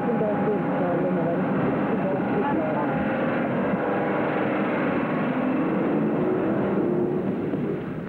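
Voices over a steady, engine-like rumble, with the muffled, narrow sound of old videotape audio.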